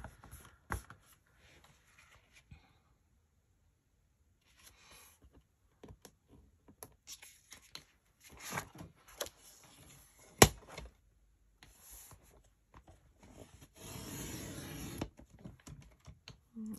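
Cardstock being handled and slid over a cutting mat and paper trimmer: quiet rubbing and rustling with light taps, one sharp click about ten seconds in, and a longer scraping run near the end as the trimmer's blade is drawn through the card.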